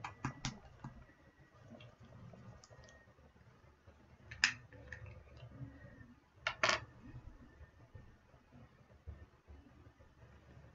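A spoon clicking and tapping against a hot sauce bottle as thick sauce is stirred: a few quick clicks at the start, then a sharp tap about four and a half seconds in and a short cluster of taps about six and a half seconds in.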